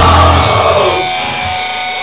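Live punk band's loud distorted electric guitar chord held as the drum beat stops, then ringing out and fading over the last second.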